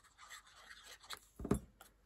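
Faint rustling and small taps of a cardstock square being handled on a cutting mat, with one soft knock about one and a half seconds in as the plastic glue bottle is set down.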